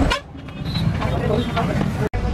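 Indistinct background voices over street traffic noise; the sound drops out sharply just after the start, then builds back.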